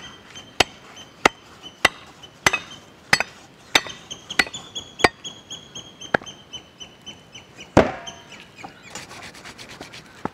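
A long knife chopping a buffalo leg on a wooden stump: sharp chops about every 0.6 s, the heaviest near 8 seconds in, and a quick run of fine ticks near the end. A faint high-pitched chirping call repeats behind the chops.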